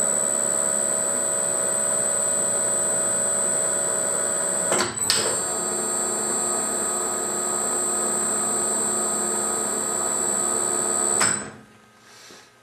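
Emco 20D lathe's spindle motor and gear train running with a steady high whine while feeding on a threading pass with the half nuts engaged. About five seconds in it stops briefly with a click and starts again reversed, changing its tone as it drives the carriage back along the thread without the half nuts being disengaged. It stops shortly before the end.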